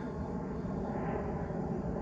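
Steady low drone of a distant engine, with a faint hiss that swells and fades about halfway through.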